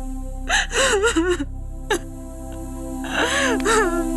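A woman sobbing with gasping breaths, in two crying bursts, one about half a second in and one about three seconds in, over background music with long held notes.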